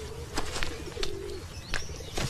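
Pigeons cooing, a low wavering coo running through the first half, with a couple of short high bird chirps. Three or four soft knocks come from the laundry bundles being pushed about.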